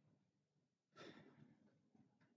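Near silence with a faint exhale, like a sigh, about a second in.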